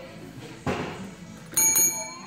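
Chrome desk service bell struck twice in quick succession about a second and a half in, each ding ringing on: a call for service at a front desk.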